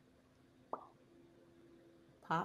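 A single mouth pop made to imitate a cork popping from a bottle, about three-quarters of a second in, otherwise near silence.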